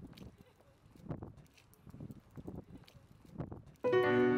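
Faint, irregular soft knocks and rustles, a few a second; near the end a grand piano chord comes in suddenly and loudly, held as the song's accompaniment begins.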